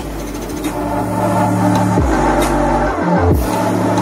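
Electronic music with long, held deep bass notes that shift pitch a couple of times, played through a JBL Boombox 2 Bluetooth speaker.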